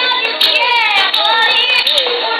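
A young girl singing nagara naam, Assamese devotional song, in long gliding, wavering phrases, with sharp percussive ticks every few tenths of a second.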